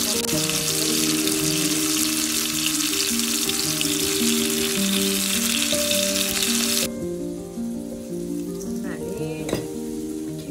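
Whole scored tomatoes frying in hot oil in a pan: a loud, steady sizzle that cuts off suddenly about seven seconds in.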